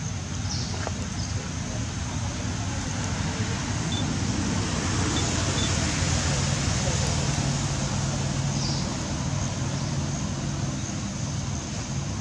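Steady outdoor background noise with a low hum, like distant traffic, and faint far-off voices, broken by a few short high chirps.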